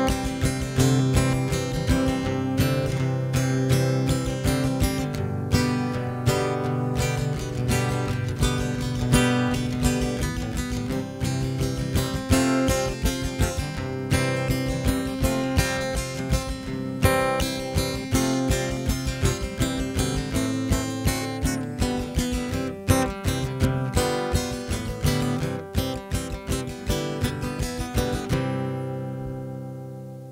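Martin steel-string acoustic guitar strummed hard and fast in an instrumental passage, its strings due for replacing. Near the end the strumming stops and a last chord rings out and fades.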